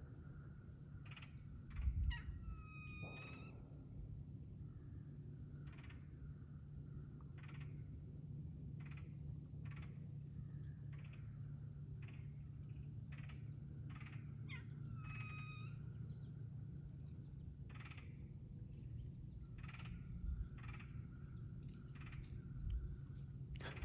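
Wild birds calling in the woods: scattered short, sharp calls about once a second, and two longer drawn-out calls, one about three seconds in and one near the middle. A low thump about two seconds in, with a steady low hum underneath.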